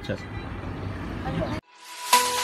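Steady outdoor background noise with faint voices, cut off suddenly about one and a half seconds in; background music fades in just after.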